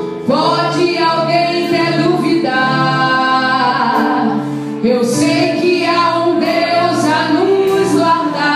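Live worship band music: a woman singing long held phrases into a microphone over keyboard, electric bass and drums, with cymbal hits.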